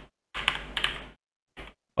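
Typing on a computer keyboard: a quick run of keystrokes, then a single keystroke about half a second later.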